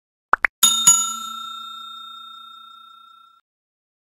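Subscribe-button animation sound effects: two quick clicks, then a notification bell chime struck twice that rings out and fades over about two and a half seconds.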